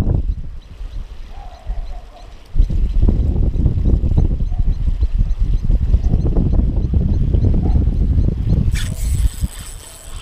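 Wind buffeting the microphone in gusts, with water trickling from a small inflow. Near the end a spinning reel is cranked in fast, bringing in a hooked bass.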